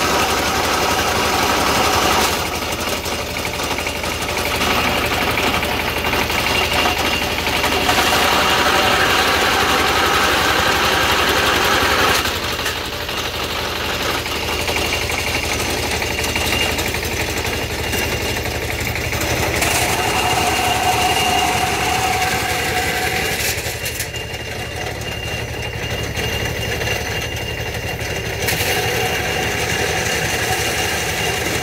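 A 16 hp diesel engine running a jute fibre stripping machine, with a steady rumbling beat and a whine on top. The tone of the machine shifts several times, about every few seconds.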